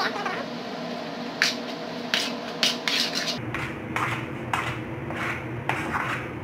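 Metal spoon scraping and knocking against an aluminium pan while stirring a thick potato mash, with short strokes about two a second. A steady low hum runs underneath.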